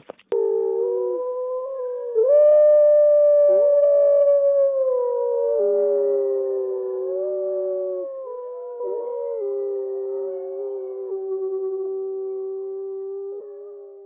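A chorus of canine howls: several long, overlapping calls that glide up and down in pitch, swelling a couple of seconds in and fading out near the end.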